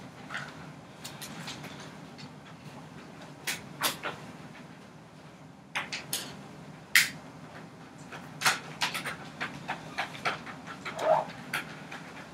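Classroom room noise: a low, steady hum with scattered short clicks and knocks from desks, pens and papers being handled. The knocks are sharpest about four seconds in and again about seven seconds in.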